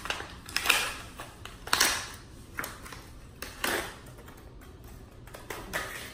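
Bicycle disc brake pads and their packet being handled in gloved hands: a handful of separate small metallic clicks and rattles, about a second apart.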